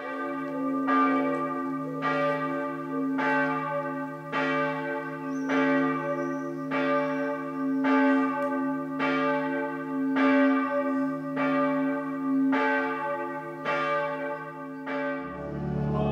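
Church bells ringing, struck roughly once a second with each stroke ringing on over a sustained low hum. About a second before the end the ringing gives way to choir singing.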